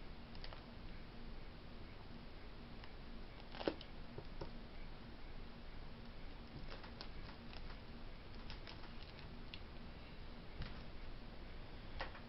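Quiet room with faint, scattered clicks and taps from hands handling the figurine and camera. There is one sharper click about three and a half seconds in, and a cluster of small ticks in the second half.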